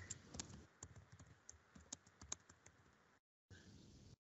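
Faint typing on a computer keyboard: quick, irregular key clicks that cut off abruptly about three seconds in.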